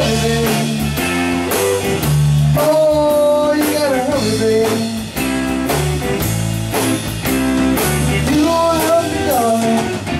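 Live blues-rock band playing: electric guitars over drums, with a lead line whose notes bend up and down in pitch.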